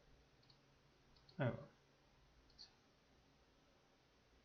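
A few faint, short computer-mouse clicks while charting software is navigated, with one brief murmured vocal sound about a second and a half in.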